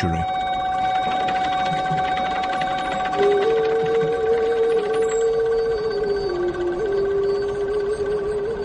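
A sustained, bell-like ringing drone of several steady tones. About three seconds in, a voice joins it, chanting long held notes that step slowly down in pitch.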